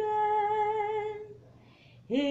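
A woman singing unaccompanied, holding one steady note that fades out about one and a half seconds in, followed by a short breath near the end.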